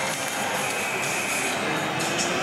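Steady hockey-arena crowd noise with music playing over it, and a faint held high tone through the middle.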